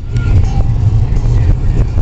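Low, continuous rumble of a moving car heard from inside the cabin: road and engine noise while driving.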